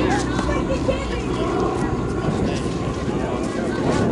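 Indistinct voices of players talking and calling out across the field, over a steady low rumble of wind on the microphone.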